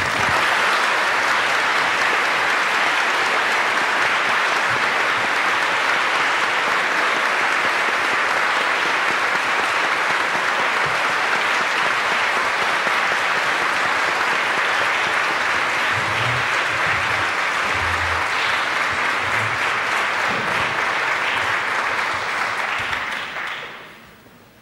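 Audience applauding steadily in a long, sustained ovation that dies away quickly near the end.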